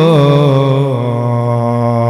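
A man's voice holding one long sung note in the melodic chanting style of a waz sermon, amplified through a microphone. The note wavers slightly at first, then holds steady.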